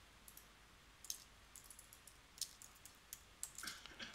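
Faint, irregular clicks of computer keyboard keys being typed, a dozen or so scattered taps.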